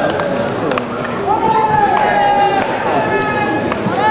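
Baseball players shouting long drawn-out calls during infield fielding practice, one call held for over a second from about a second in. A few sharp cracks of bat and ball break through the shouting.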